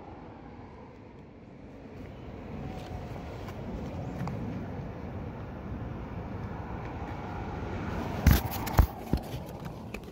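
Road traffic passing: a steady rushing noise that slowly swells, with a couple of sharp knocks about eight seconds in.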